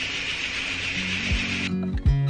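A steady hiss of room noise, which cuts off near the end as background music with strummed guitar begins.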